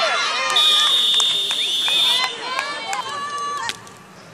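A referee's whistle blown in one long steady blast starting about half a second in. It sounds over high-pitched women's voices shouting and cheering, which die down just before the end.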